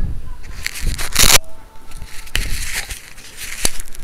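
Handling noise from a handheld camera being moved: irregular crackling, rubbing and clicks, with one loud scraping rush about a second in.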